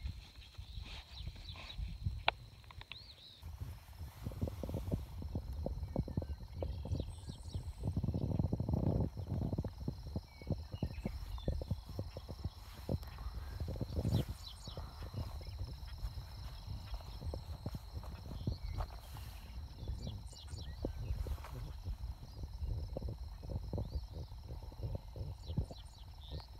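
Outdoor ambience: a continuous low rumble of wind on the microphone, with scattered clicks and rustles from handling the phone and stepping about. A faint steady high tone runs underneath.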